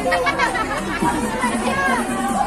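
Several women's voices chattering over one another.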